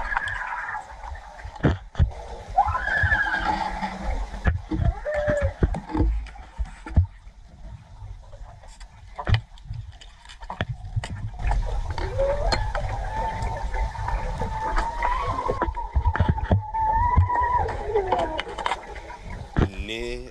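Muffled, wavering screams heard underwater in a free diver's GoPro recording: short rising-and-falling cries early on, then one long warbling scream lasting several seconds. Underneath is a low water rumble with scattered clicks.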